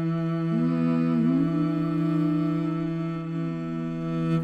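Slow string music: a cello holds a low sustained note while a second melodic line comes in about half a second in and slides up in pitch.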